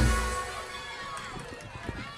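A live cumbia band's song ends right at the start: the last beat dies away over about half a second. It leaves a low background with faint voices.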